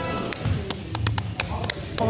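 A basketball bouncing and players' sneakers hitting a hardwood gym floor: about eight sharp, irregular knocks, over a steady low hum.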